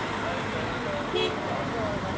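Outdoor ambience of a steady background rush with distant people talking, and a short louder call about a second in.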